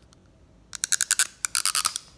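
Two short bursts of rapid clicking, each about half a second long, the first about three-quarters of a second in and the second near the end.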